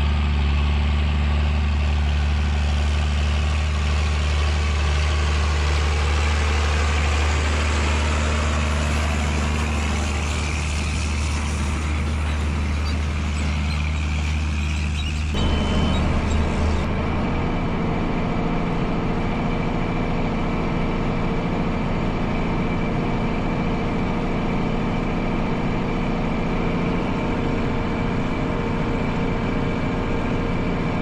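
John Deere tractor's diesel engine running steadily at working speed in the field. About 15 seconds in the sound changes abruptly to a closer pickup of the same engine with a different, higher set of tones.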